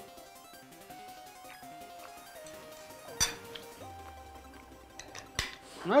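Soft background music with two sharp clinks of a metal fork against a plate, about three seconds in and again about five seconds in.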